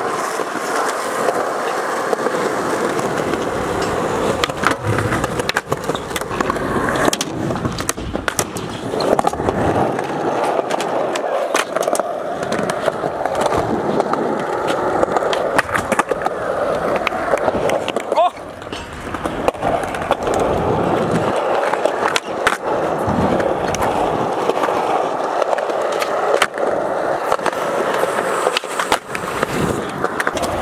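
Skateboard wheels rolling on a concrete skatepark surface, with repeated sharp clacks of tail pops and board landings.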